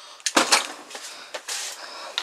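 Clattering and knocking of hard objects being moved about while someone rummages through things, a few sharp clacks loudest about half a second in, then lighter knocks.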